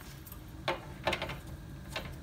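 A key clicking in the cabinet lock of a metal electrical enclosure door: a few short, separate light clicks, the first about two-thirds of a second in and the last just before the end.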